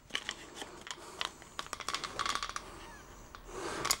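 Light clicks and rubbing of a clear plastic digital-thermometer case being handled, with a quick run of small ticks about two seconds in.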